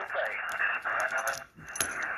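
Xiegu X6100 HF transceiver's speaker hissing with 40-metre band noise and a faint single-sideband voice, with small clicks throughout. About one and a half seconds in, the receiver audio drops out briefly and comes back after a click, as the antenna feed is switched.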